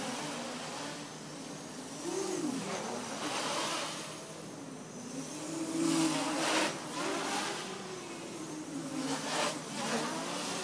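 Armattan 290 quadcopter's brushless motors and propellers buzzing in flight, the pitch rising and falling with throttle as it flies acrobatic manoeuvres, with louder swells several times as it passes close.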